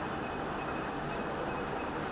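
A pause in speech: steady background room noise, an even hiss with a faint high-pitched tone running through it.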